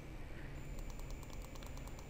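Faint repeated clicks of a computer mouse over a low steady hum.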